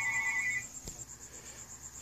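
Telephone ringing with a steady electronic tone, which cuts off about half a second in. A faint, high-pitched pulsing tone carries on underneath.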